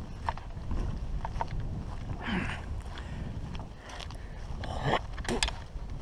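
Low wind rumble on an action camera's microphone, with scattered light footfalls and rustles as the wearer walks over grass and pine straw.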